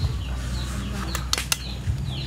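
Birds calling with a repeated falling chirp over a low steady hum, with two sharp clicks about a second and a half in.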